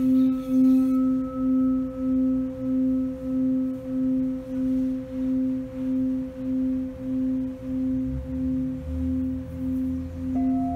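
Charcoal quartz crystal singing bowl singing: the rim is rubbed with a mallet, then the bowl rings on by itself. It holds one steady tone that wavers in slow, even pulses, about one and a half a second, with a fainter higher overtone above it; a faint low rumble joins near the end.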